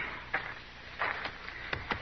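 Radio-drama sound effects: about five scattered wooden knocks and clicks, the loudest about a second in, going with a loaded wagon being readied to set off.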